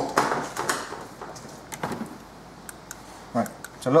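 Clattering and knocking of hard plastic parts being handled in a car's engine bay, loudest in the first couple of seconds, followed by a few lighter clicks.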